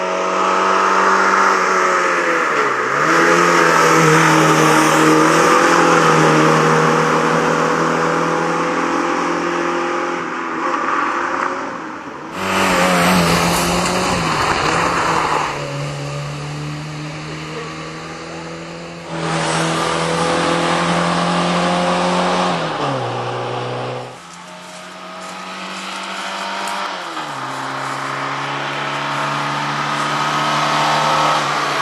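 Fiat 125p rally car's engine revving hard under load, its pitch dropping sharply several times as it shifts gear or lifts off for corners. A stretch of loud rushing noise near the middle comes from tyres on loose gravel. The sound changes abruptly a few times between passes.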